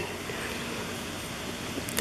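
Steady outdoor background noise: an even hiss with no distinct events.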